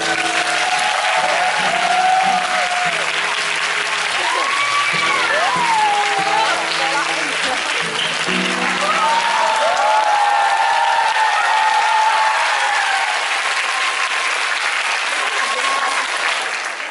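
Audience applauding and cheering, with shouts rising and falling over the clapping. The last notes of the performance music sound beneath it until about nine seconds in.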